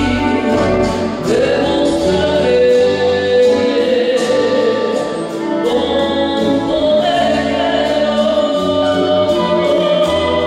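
A woman singing into a hand-held microphone through a PA, holding long notes, backed by a live band with bass and a light, regular cymbal tick.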